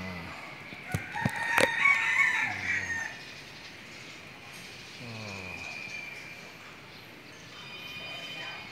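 A loud, pitched animal call, bird-like, starting about a second in and lasting about two seconds, with a few sharp clicks near its start.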